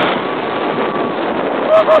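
Steady rush of wind buffeting the microphone and the noise of a roller coaster train running fast along its track. Near the end a rider starts crying out "oh, oh".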